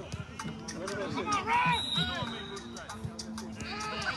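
Several men's voices calling and talking over one another on an outdoor pitch. A short, high, steady tone sounds about two seconds in, and a low steady hum runs underneath.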